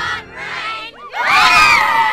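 A group of children shouting and cheering together, with a loud cheer of many voices breaking out just over a second in.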